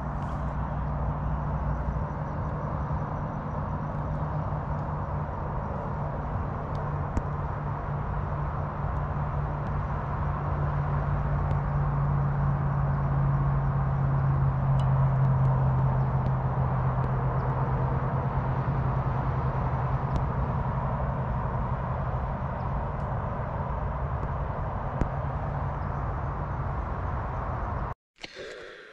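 A distant engine drone, steady and humming, that grows louder toward the middle and sinks a little in pitch as it passes, then eases off.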